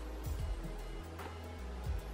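Quiet background music with low bass notes that change a few times.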